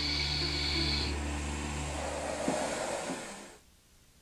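Steady rushing hiss of air with a low hum from the pressure suit's air and oxygen supply, fading out shortly before the end.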